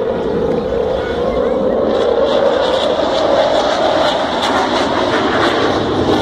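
Engine noise of a JF-17 Thunder fighter jet passing overhead, a steady, noisy rumble from its single turbofan, with crowd voices mixed in.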